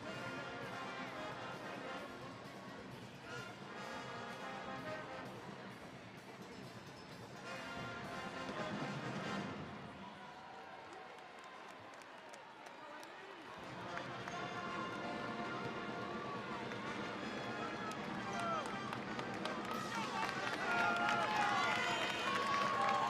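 Basketball arena ambience during a break in play: music playing over the arena with crowd murmur, dipping quieter about halfway through. Voices and crowd noise grow louder near the end as play is about to resume.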